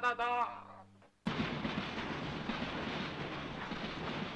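A man's rapid staccato 'tatata' chant fades out within the first second. After a sudden cut comes the steady din of a yakitori grill shop: an even, hiss-like grill sizzle and room noise, with faint clinks.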